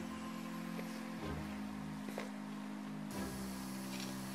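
Soft background music, sustained low notes changing to a new chord about once a second.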